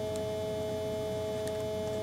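A steady electronic tone: two pitches held together without change over a faint hiss, with a couple of faint ticks.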